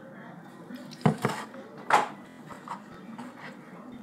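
A spoon knocking against a bowl while slime is stirred: two quick sharp clicks about a second in and one more near two seconds, over low room noise.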